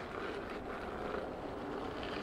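Veteran Sherman electric unicycle riding over a rough gravel trail: steady, even tyre and riding noise.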